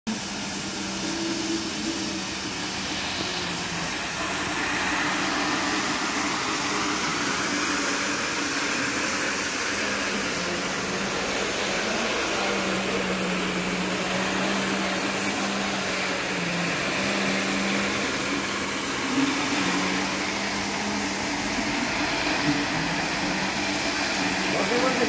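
Comac ride-on scrubber drier running as it scrubs and vacuums a stone platform floor: a steady motor hum over a wash of suction noise, its low tone wavering slightly in pitch.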